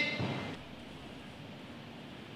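Quiet room tone in a large gym: a faint, even background hiss, with the echo of a shouted count dying away in the first half second.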